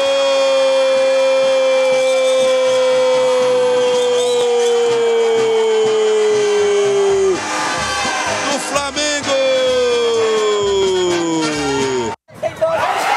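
A football commentator's long drawn-out goal shout, held on one slowly falling note for about nine seconds, then after a short break a second long held note that sinks in pitch to the end.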